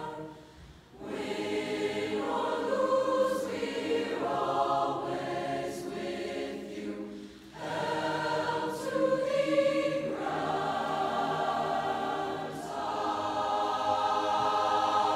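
A large combined high school choir of mixed voices singing the school alma mater, with short breaks between phrases about a second in and again about seven seconds in.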